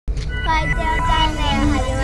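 A person's voice over a loud, steady low rumble.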